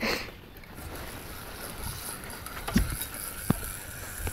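Handling noise from a wooden-framed landing net with a netted rainbow trout in it on a boat: a brief rustle at the start, then a low steady background with two light knocks, less than a second apart, in the second half.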